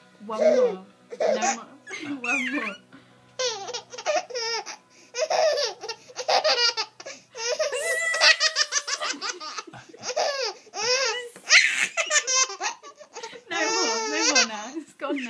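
Baby laughing in repeated bursts of belly laughter, a few at first and then coming thick and fast from a few seconds in.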